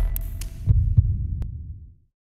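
Electronic logo sting: the tail of a synth swell dies away, then two deep thuds land about a third of a second apart, like a heartbeat, and the sound fades out.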